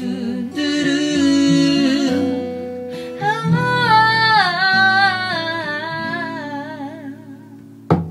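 A woman singing a wordless melody that swoops up and down, with a strummed acoustic guitar underneath. The voice fades away near the end, and a sharp tap comes just at the end.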